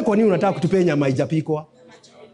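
A man's voice preaching, which breaks off about a second and a half in into a short pause.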